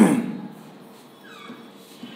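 A man's voice trails off on a falling pitch at the start, then low room noise, with a faint high whine falling in pitch about midway.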